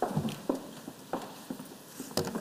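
Footsteps on a stage floor, about two steps a second, as people walk across the stage.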